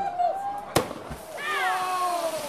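A splashdiver's body slaps the water with a sharp crack about three-quarters of a second in, between drawn-out shouts whose pitch falls away. The landing is a failed, unclean jump: the legs were not parallel to the water and not fully stretched.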